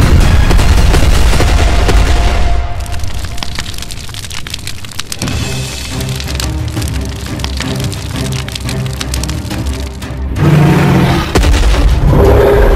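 Explosion boom with a low rumble for the first two and a half seconds, then dropping away under background music with a repeating pattern. A loud low sound comes back near the end.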